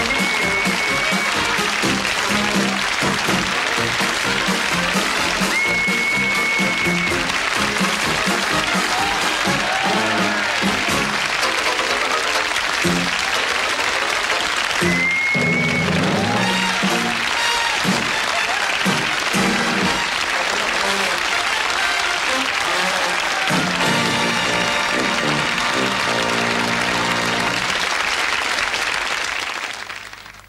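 Closing theme music of a TV sitcom playing over studio audience applause, ending on a held chord that fades away at the very end.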